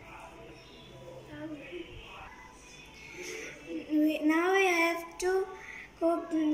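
A child singing, faint at first, then loud from about four seconds in with a long wavering held note.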